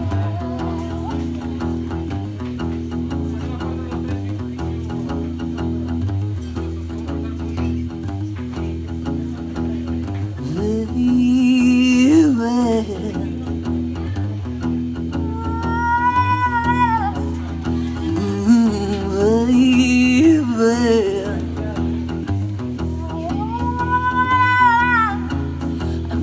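Acoustic guitar playing a repeating low blues riff while a harmonica wails bent, wavering notes over it in several phrases.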